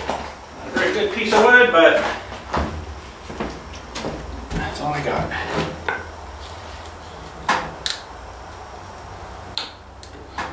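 Irregular clunks and scrapes of a wooden stick worked against a tractor's front axle as it is levered, with a few sharp knocks near the end. A short stretch of voice comes about a second in.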